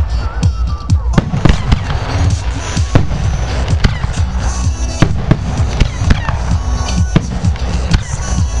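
Aerial fireworks shells bursting in a rapid, irregular run of sharp bangs, several a second, over a continuous low rumble, with music playing along.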